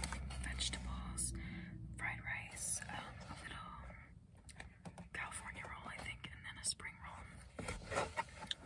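A woman whispering close to the microphone, with scattered soft clicks and crackles from a clear plastic takeout container being handled.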